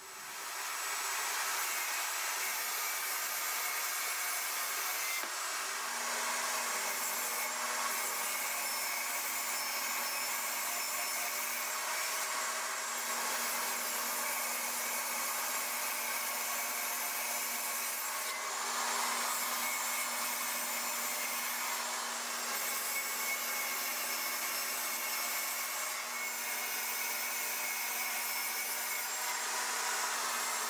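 Table saw starting up over about a second, then running steadily while a plywood panel is ripped through its blade, fed with a push stick.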